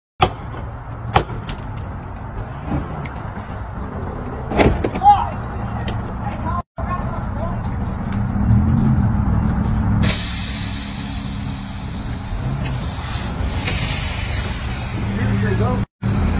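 A vehicle engine running with a steady low rumble, with a few sharp knocks in the first five seconds and snatches of muffled voices. A steady high hiss comes in suddenly about ten seconds in.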